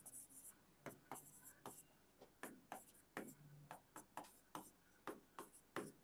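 Faint, irregular taps and short strokes of a stylus pen on an interactive smartboard screen, about three a second, as tick marks and numbers are written along a graph axis.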